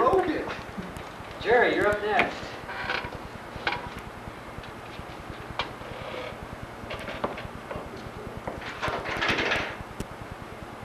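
Indistinct voices talking off-camera, loudest near the start and about two seconds in, with scattered light knocks and a short noisy rustle near the end.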